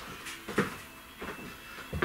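A few soft, scattered knocks and handling noises, roughly one every half second to second.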